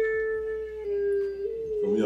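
A woman's voice holding one long, high note for nearly two seconds, dipping slightly in pitch midway and stepping back up before it breaks off into laughter and talk.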